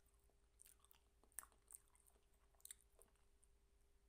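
Faint chewing with a few small crisp clicks and crunches, typical of biting through the white-chocolate and cookie-piece coating of an ice cream bar; the clearest come about a second and a half in and near three seconds.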